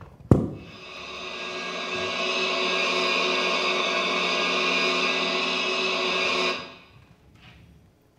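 A sharp knock, then a steady electronic drone of many held tones, a sound cue played through the theatre's speakers. It swells in over about two seconds, holds, and fades out about a second and a half before the end.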